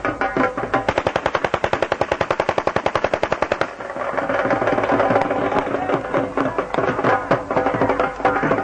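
Dhol band music with a fast, even run of sharp cracks, about a dozen a second, for some three seconds; then a denser hissing crackle from a handheld spark-throwing firework over the music.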